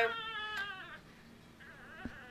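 Young American Cocker Spaniel puppy crying: one long, high cry that slowly falls in pitch and fades over about a second, followed by a fainter, wavering cry near the end.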